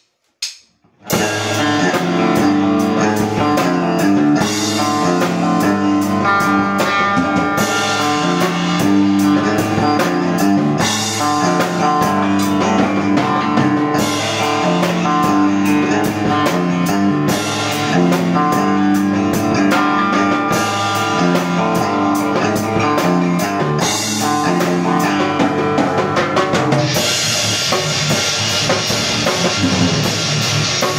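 A live rock band, a drum kit and an electric guitar played through an amp, starts playing together about a second in and plays a steady groove. The sound gets brighter and fuller near the end.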